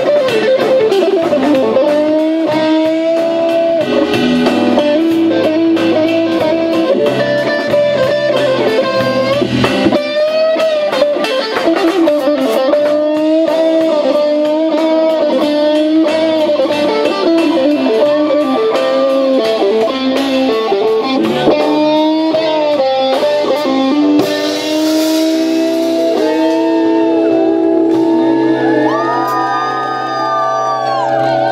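Live rock band playing: an electric guitar lead with bending, sliding notes over bass guitar and a Tama drum kit, with a burst of cymbal about three-quarters of the way through.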